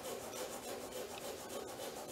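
A drawing tool rubbing and scratching across paper on a large upright board in quick, repeated strokes.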